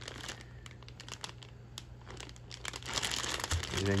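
Clear plastic bag of model-kit sprues crinkling as it is handled and turned over: a run of small crackles that grows busier near the end.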